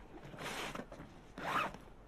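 The zipper of a fabric bag being pulled open by hand, in two short pulls, the second the louder.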